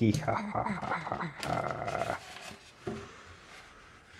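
Excited human voices: short exclamations or laughter for about the first two seconds, then much quieter.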